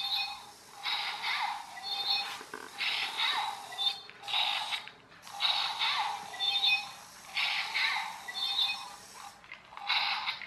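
Small infrared remote-control toy robot's electric drive motor and plastic gears whirring in short repeated bursts, about one a second, as it drives and stops on a wooden floor.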